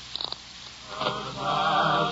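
Faint hiss of an old radio recording. About a second in, music with choir voices begins on held notes and swells in loudness.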